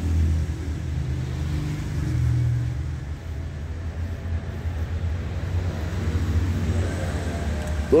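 A steady low rumble of a running engine, with faint voices in the background.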